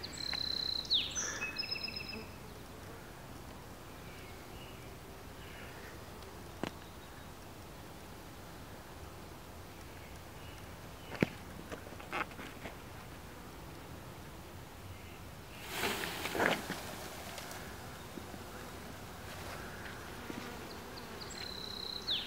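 Faint steady hum of a honeybee swarm in the air around a tree. About sixteen seconds in comes a brief, louder rustle, as the branch holding the bee cluster is shaken to drop the bees into a hive box.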